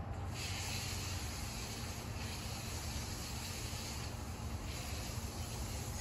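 Steady outdoor background noise: a hiss over a low rumble, with no distinct sounds standing out.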